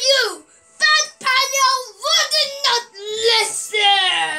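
A child's high voice in several short sing-song phrases, with no clear words.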